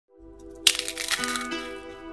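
A crisp deep-fried dough twist snapping and crunching as it is crushed in the hand: one sharp crack about two-thirds of a second in, the loudest sound, then smaller crackles. Background music plays throughout.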